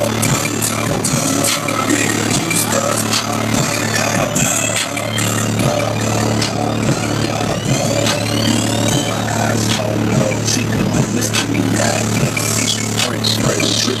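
Rap music with a deep, steady bass line played loud on a car audio system of fifteen Sundown Audio SA-10 subwoofers, heard from inside the car.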